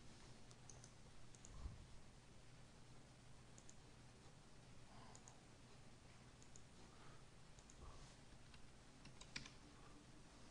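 A few faint, scattered clicks of a computer mouse and keyboard over near-silent room tone, the sharpest one near the end.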